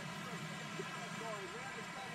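A man's voice asking a question, faint and distant, over a steady background hum.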